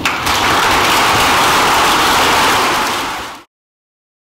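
Audience applause, a dense even clatter of clapping that fades and is cut off to silence about three and a half seconds in.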